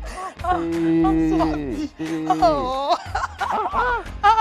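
Excited, drawn-out wordless cries and laughter from voices over background music.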